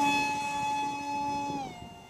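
DYS BE2208 2600 Kv brushless motor spinning a Master Airscrew 6x4x3 three-bladed propeller on an RC park jet in flight: a steady, high whine, almost like a ducted fan. Near the end the pitch steps down and the sound fades as the plane climbs away.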